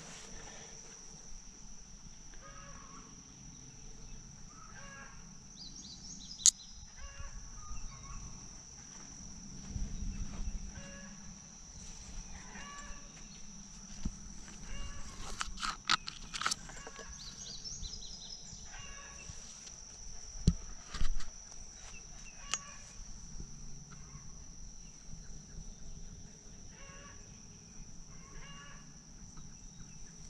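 Insects droning steadily at a high pitch, with short animal calls repeating every second or two. A few sharp clicks and knocks stand out, the loudest about six seconds in and again around twenty-one seconds in.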